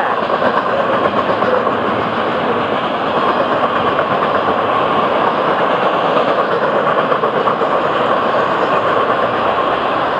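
Florida East Coast Railway freight train's cars rolling past close by at speed, with a steady, loud sound of steel wheels on rail.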